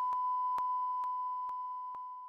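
A steady pure sine tone from the speaker driving a sand-covered cymatics plate, the sand settling into ring patterns. The tone fades toward the end. Faint, evenly spaced clicks sound about twice a second under it.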